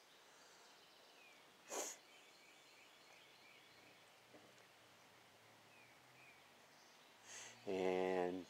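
Quiet outdoor background with faint, repeated short bird chirps. A brief sniff about two seconds in, and a breath and the start of a man's voice near the end.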